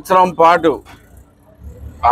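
A man speaking Telugu for under a second, then a brief pause. About a second and a half in, a low rumble like a passing road vehicle starts and carries on.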